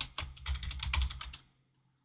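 Computer keyboard typing: a quick run of keystrokes entering a short command, stopping about two-thirds of the way through.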